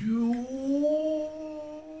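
A man's long, drawn-out 'oooh' of amazement: one voice that rises slightly at the start, then holds a steady pitch.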